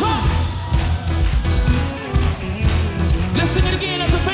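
Live worship band playing an upbeat song: drum kit hits, bass and guitars over keyboard, with a voice coming in near the end.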